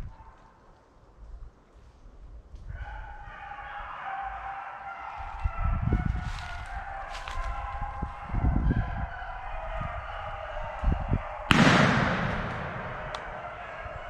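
Pack of beagles baying on a rabbit's trail: a continuous chorus of overlapping hound voices that begins about three seconds in. Near the end, a single sudden loud crack, a shotgun shot.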